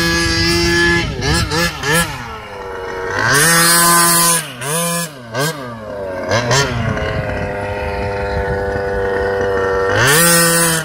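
Losi 5ive-T RC truck's small two-stroke gas engine revving in quick throttle blips and bursts. A longer high-revving run about three seconds in is followed by more short blips, then the engine settles to a steady lower run for the last few seconds.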